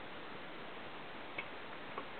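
Steady hiss of room noise with two short faint clicks, one about one and a half seconds in and one just before the end.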